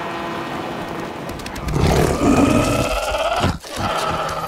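A steady background din, then about two seconds in a creature's long, pitched roar that rises slightly and cuts off sharply just before the end.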